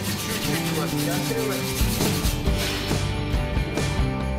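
Sandpaper rubbing by hand over epoxy primer on a steel wheel arch: 120-grit dry sanding in quick strokes, stopping about three seconds in. Background music plays under it.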